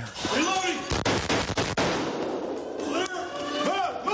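A rapid string of gunshots from a police officer's rifle, about half a dozen shots in under a second, heard through a body camera, with men shouting around them.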